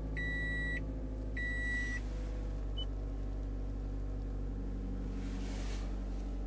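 Toyota Corolla's dashboard warning chime beeping twice, each a steady high tone of about half a second, then stopping. A steady low hum runs underneath.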